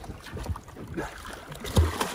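Water splashing at the sea surface as a freshly speared grouper is handled, with wind on the microphone and a low thump near the end.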